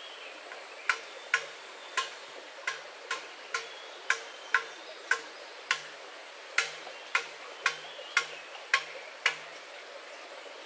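Footsteps on the stones of a rocky streambed: sharp clacks with a short low knock, about two a second at an uneven walking pace, over a faint steady high hiss.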